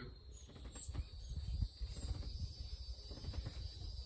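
Steady high-pitched insect chorus from the woods, with an irregular low rumble underneath.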